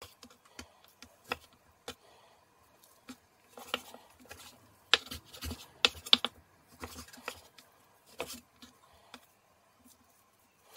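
Chef's knife cutting raw beef steak into cubes on a wooden chopping board: irregular taps and short scrapes as the blade slices through the meat and meets the board, loudest in a quick cluster about five to six seconds in.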